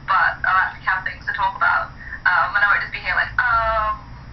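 A woman talking through a phone's small speaker, thin and tinny with no low end, her last word drawn out near the end.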